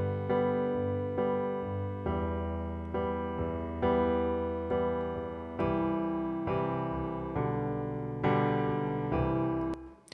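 Solo piano playing a slow accompaniment of sustained chords, a new chord or note struck every half second to a second and each left to ring and decay. It stops just before the end.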